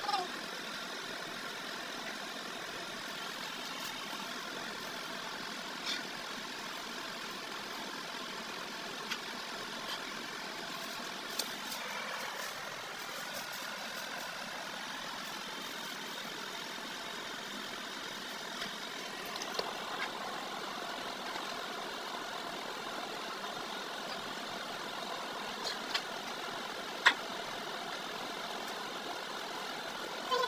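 A steady machine-like hum with a few light clicks and knocks scattered through it, and one sharper knock near the end.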